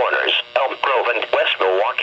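A NOAA Weather Radio broadcast voice reading out a severe thunderstorm warning's list of towns and arrival times, played through a Midland weather radio's small speaker.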